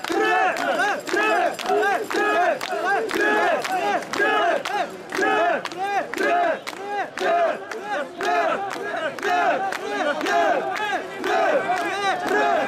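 Crowd of mikoshi bearers chanting in rhythm as they carry a portable shrine, many voices shouting the same short call together about twice a second.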